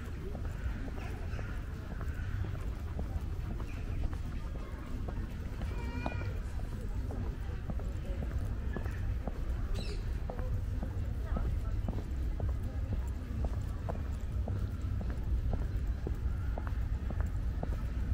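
Walking footsteps on brick paving, an even pace of about two steps a second, over a low steady rumble of outdoor background noise.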